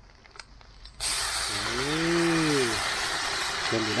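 Food sizzling in hot oil in a wok, a steady loud hiss that starts abruptly about a second in. A man's short rising-and-falling hum sounds over it.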